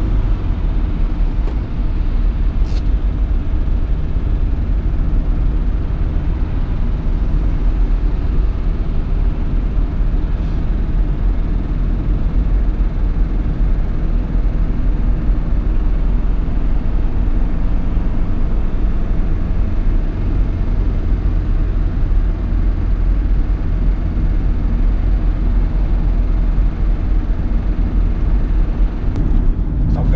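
Steady low rumble of road and engine noise inside the cabin of a 2010 Chevrolet Captiva 2.0 VCDi diesel while it cruises.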